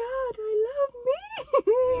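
A woman's high-pitched wordless wail, wavering up and down in pitch with a few short breaks.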